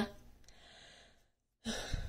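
A pause between sentences: near silence, then a short audible intake of breath near the end before speaking again.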